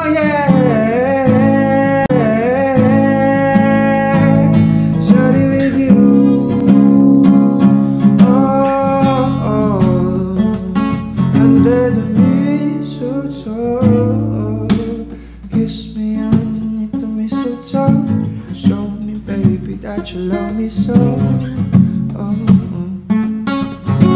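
Acoustic pop music: a sung vocal line over acoustic guitar for the first half. After a dip in loudness about halfway through, the guitar plays picked and strummed notes with little or no voice.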